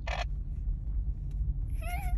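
Steady low rumble of a car cabin on the move, with two short bursts of hiss from a handheld radio right at the start. Near the end a child gives a brief, rising squeal.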